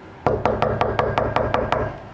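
Rapid knocking with a hand on a wooden room door, about six or seven knocks a second, starting a moment in and lasting well over a second: a wake-up knock.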